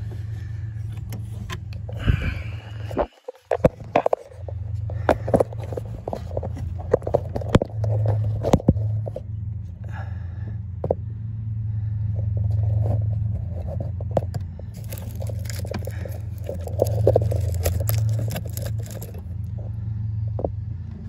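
Scraping, rustling and clicking as hands fish a car's oxygen-sensor wire through the engine bay, with a steady low hum underneath that drops out briefly about three seconds in.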